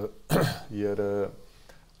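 Speech only: a man talking, with a short pause near the end.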